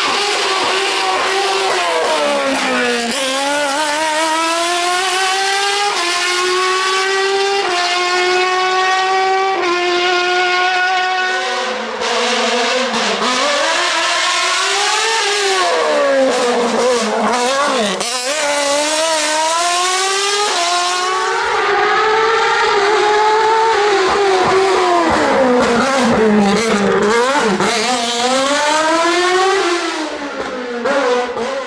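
Single-seater formula race car's engine revving hard up the hill, its pitch climbing and then dropping back in a series of sharp steps at the gear changes. In the second half it rises and falls repeatedly as the car brakes and accelerates through bends.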